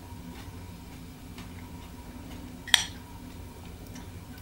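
Quiet kitchen room tone with a steady low hum and faint ticks, broken by one sharp click about three-quarters of the way through.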